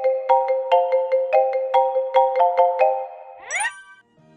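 Smartphone incoming-call ringtone: a melody of quick struck notes over a held chord, ending with a quick upward sweep about three and a half seconds in.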